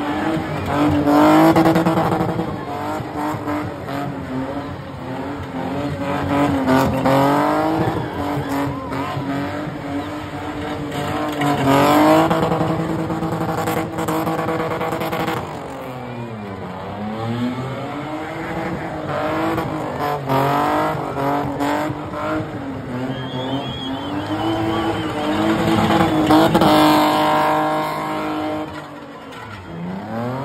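BMW E30 spinning: its engine held at high revs while the rear tyres spin and squeal. The revs drop briefly and climb again about halfway through and once more near the end.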